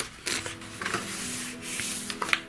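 Paper pages of a colouring book being turned and smoothed flat by hand: a soft click, then several short rustling, rubbing strokes of paper under the palms.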